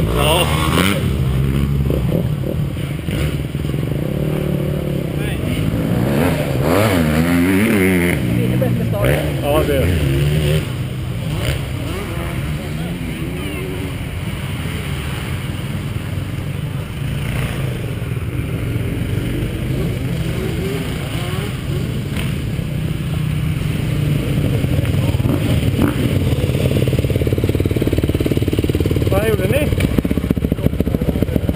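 Motocross bike engine running at low speed, its pitch rising and falling with a few throttle blips about six to eight seconds in, then running steadier and a little louder toward the end.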